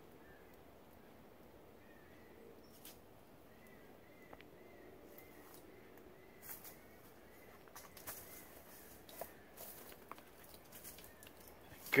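Faint scratches and taps of a small dog's claws on smooth tree bark as she climbs along the limbs. They come as a few soft scrapes, more of them in the second half. A bird chirps faintly and repeatedly in the background.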